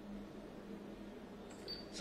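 Faint room tone with a steady low hum. A short, faint high-pitched tone comes near the end.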